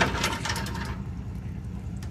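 A vehicle engine running steadily at low revs as it pulls a pickup up onto a car trailer by chain. There are a few short clicks in the first second.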